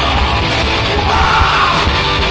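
Live rock band playing loud and steady: electric guitars, bass guitar and drums, with a lead vocal that comes up strongest in the second half.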